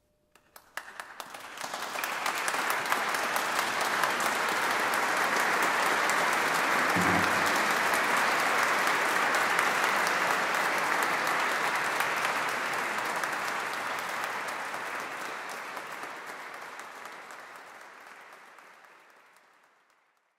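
Audience applause: a few scattered claps, then it swells quickly into steady, full applause and fades away over the last several seconds.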